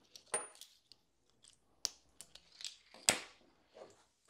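Small handling sounds on a workbench: a marker pen is set down and a metal crimping die is picked up. There are a few sharp clicks and light knocks, the loudest about three seconds in.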